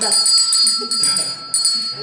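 A timekeeper's bell struck twice, about a second and a half apart, each ring held until the next. It is the double ring that marks the six-minute mark, the end of a speaker's time.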